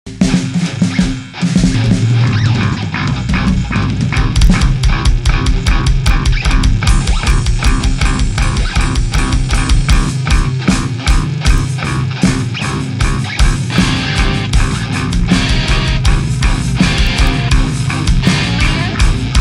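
Improvised death/grind metal played by a band: distorted electric guitar, bass guitar and a drum kit with rapid, even drum strokes. The full band comes in after a short dip about a second in.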